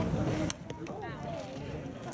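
A single sharp impact about half a second in, a pitched baseball striking the batter, followed by spectators' short exclamations.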